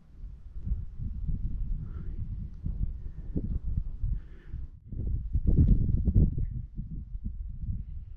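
Wind buffeting the microphone in irregular gusts, a low rumble that is strongest about five to six seconds in.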